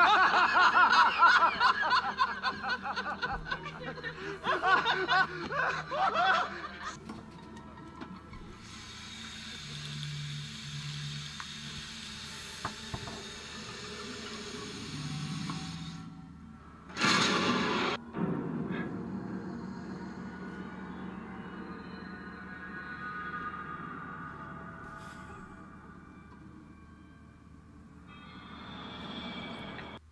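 A man laughing wildly and loudly for the first several seconds, then quiet dramatic film-score music, broken by a brief loud noise about seventeen seconds in.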